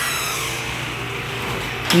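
Electric garage door opener running as a sectional overhead garage door rolls up, a steady even hum.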